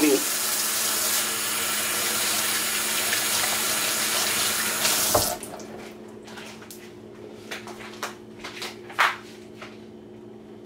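Kitchen faucet running steadily into the sink as hands are washed, then shut off with a knock about five seconds in. Afterwards come a few small clicks and knocks, the loudest near the end.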